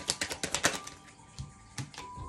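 A tarot deck being shuffled by hand: a quick run of card clicks through the first second, then two single clicks.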